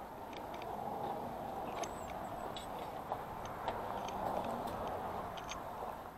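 Handheld camera being carried while walking: a steady rustling hiss with scattered, irregular light ticks and clicks.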